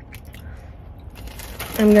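Faint chewing of a fried potato-and-cheese corn dog, with soft wet mouth clicks that grow busier in the second half; a woman starts to speak right at the end.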